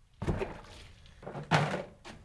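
Two heavy thuds, one shortly after the start and a louder one about a second and a half in.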